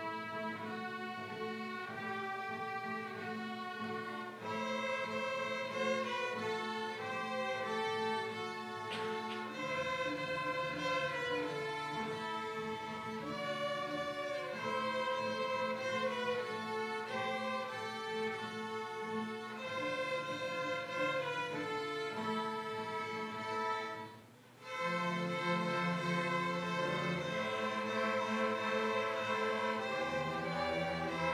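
A student string orchestra of violins, cellos and double basses playing an ensemble piece. The music breaks off for a brief rest about three quarters of the way in, then carries on with the low strings more prominent.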